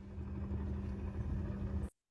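A steady low rumble with a constant low hum running under it, from the soundtrack of a news video played back in the lecture. It cuts off suddenly near the end as the clip ends.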